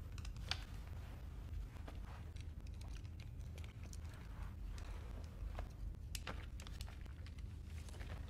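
Near-quiet room tone: a low, steady hum with faint, scattered small clicks and rustles.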